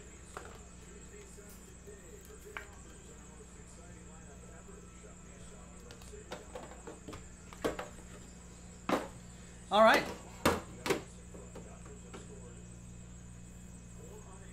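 Sealed hockey-card boxes and a card tin handled on a table: a few light knocks and clicks over a steady low room hum. A brief voice sound about ten seconds in is the loudest moment.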